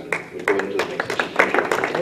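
Audience applauding: a dense run of irregular hand claps that breaks out at the start, with a few voices mixed in.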